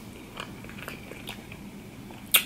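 Close-miked chewing of a mouthful of sushi roll: soft, wet mouth sounds with a few small clicks.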